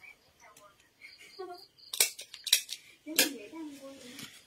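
Stapler clicking as a piece of fabric is stapled: one sharp click about halfway through, followed quickly by a few more clicks.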